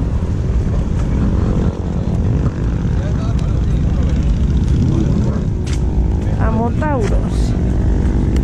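Strong wind buffeting the camera's microphone, a loud, steady low rumble.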